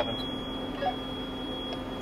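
Kubota M4D-071 tractor's diesel engine running steadily under the speech pauses, with a faint steady high-pitched tone over it.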